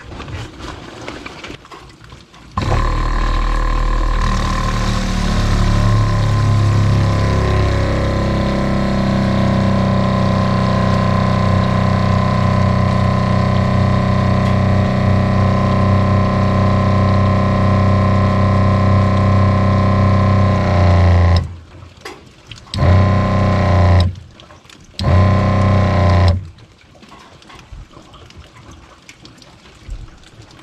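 New Shurflo diaphragm RV water pump running for the first time: it starts a couple of seconds in and runs steadily for about twenty seconds as it fills and pressurizes the lines, cuts off, then restarts twice in short bursts of about a second each. It runs smoothly, sounding a lot nicer than the rough old pump it replaced.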